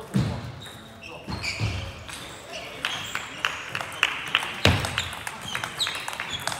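Table tennis rally: the plastic ball clicking sharply off bats and table, about three hits a second, starting about three seconds in. A few dull thumps close to the microphone, the loudest right at the start.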